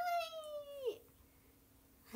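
A pet's single high, drawn-out cry lasting about a second, holding its pitch and then dropping away at the end. It is given on request.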